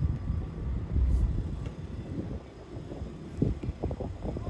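Wind buffeting the microphone: an uneven low rumble that swells about a second in and dips in the middle.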